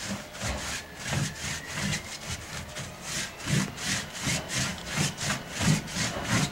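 Brush scrubbing paint onto a large hanging canvas: rapid scratchy back-and-forth strokes, about three a second, with soft thuds of the canvas against the wall, growing louder in the second half.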